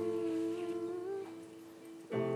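A person humming a held note with a slight waver, fading away over about a second and a half.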